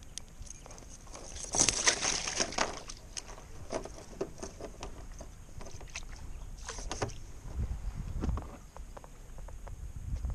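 A splash and rustle as a mesh fish basket holding a caught crappie is let down into the water alongside a kayak, then a second short burst with sharp clicks as its clip is handled, and a few low bumps.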